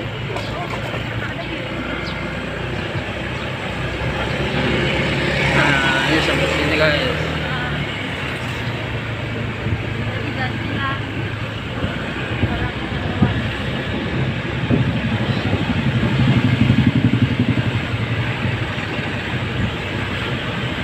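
Motorcycle riding noise heard from the rider's seat: the engine running steadily under way with road and wind rumble, and other traffic nearby.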